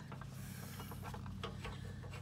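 A steel bolt clicking and scraping against a steel bracket as it is worked into the hole by hand: a few light, irregular metallic clicks over a steady low hum.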